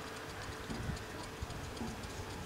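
Faint outdoor ambience on a football pitch: a couple of soft thuds of footballs being kicked, over a faint, fast, even ticking in the background.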